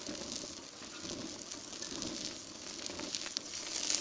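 Oak and manzanita wood fire in a Weber kettle grill crackling and hissing with a few faint sharp pops, while the flames are fanned with waves of the grill lid.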